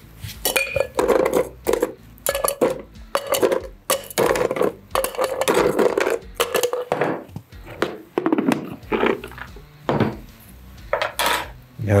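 Ice cubes lifted from an ice bucket with tongs and dropped into a stainless steel cocktail shaker tin: a run of irregular clinks and clatters.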